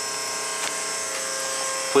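A steady buzzing hum made of several thin, even high tones, with no distinct event in it.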